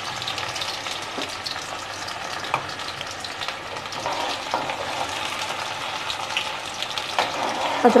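Chopped onion frying in hot oil in a steel kadhai: a steady sizzle, with the scraping and light ticks of a steel ladle stirring it.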